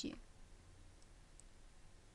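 A couple of faint computer mouse clicks over near-silent room tone.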